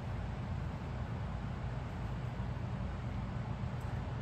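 Steady low hum with a faint hiss of indoor background noise, unchanging throughout, with no distinct knocks or clicks.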